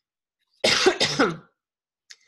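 A woman clearing her throat in two short bursts, a little over half a second in.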